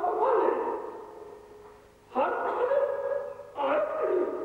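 A man giving a speech into a microphone over a public-address system, with his voice carrying in the hall. His speech breaks off twice: a lull of about a second around the middle and a short gap near the end.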